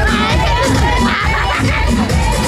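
A party crowd shouting and cheering, loudest about halfway through, over loud batucada drumming with a heavy beat.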